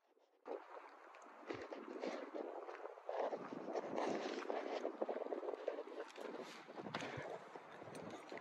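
Footsteps crunching and rustling through dry twigs, branches and leaf litter, with wind noise on the microphone, starting about half a second in.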